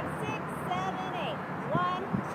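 Indistinct voices of people talking, with no clear words, over a steady hum of street traffic.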